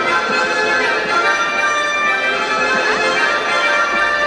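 Andean carnival dance music from a troupe's band, with several instruments holding steady high notes.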